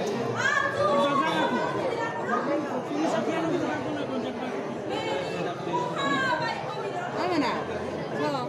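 Several voices talking over one another, with no pause.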